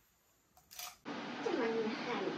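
A brief click or clatter, then a woman's soft whimpering vocal sound whose pitch slides down and levels off, over room noise. She is bracing for a hormone injection into her belly.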